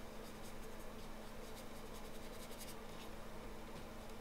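Faint, irregular strokes of a wet watercolor brush rubbing across paper, over a steady low hum.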